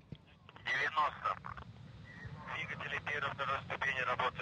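Speech only: a voice quieter than the surrounding commentary, in two stretches, about a second in and through the second half.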